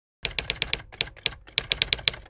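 Typing sound effect: a quick run of sharp key clicks, irregularly spaced at about five a second with short pauses, as the title text is written out letter by letter.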